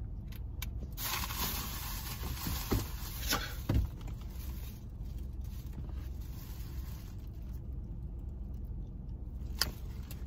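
Small clicks and scrapes of a plastic lip balm tube being handled and uncapped, the loudest click near the end, over a steady low hum and a hiss lasting several seconds inside a car cabin.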